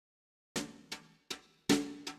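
Silence for about half a second, then a drum count-in on the kit: four short, even strikes at a brisk waltz tempo, about two and a half a second, the last the loudest, counting in the backing band.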